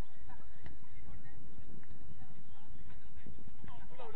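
Footballers' shouts and calls carrying across an outdoor pitch, over a steady low rumble, with a louder falling shout near the end.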